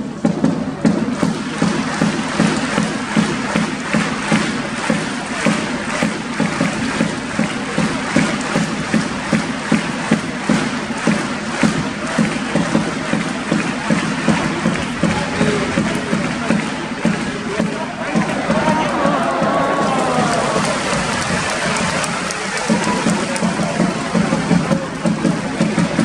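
Football stadium crowd clapping in a steady rhythm, about two claps a second, over a constant crowd murmur.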